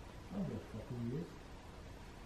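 Two short, faint utterances from a man's low voice, about half a second apart, each dipping and then rising in pitch.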